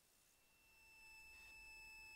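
Near silence, with a faint steady high electronic tone coming in about halfway through and holding.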